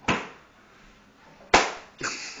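Two sharp impacts about a second and a half apart, each dying away quickly, the second the louder.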